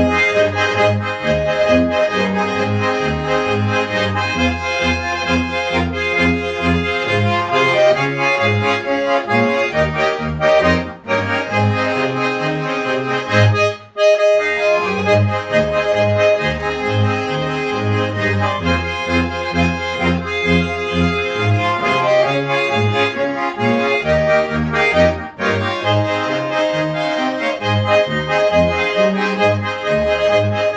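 Schwyzerörgeli (Swiss diatonic button accordion) playing a folk tune, with a regular pulsing bass under sustained chords and melody. There are a few very short breaks between phrases.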